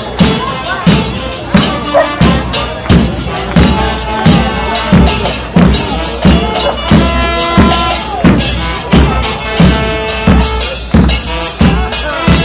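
Murga porteña percussion: bombos con platillo, bass drums with a cymbal mounted on top, beating a steady march rhythm, each stroke a deep boom with a cymbal crash, about three strokes every two seconds.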